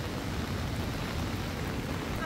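Steady rain falling, an even hiss with no distinct strokes.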